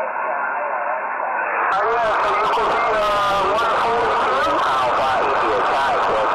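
A man's voice received over a radio transceiver, narrow and tinny, with hiss coming in over it about two seconds in.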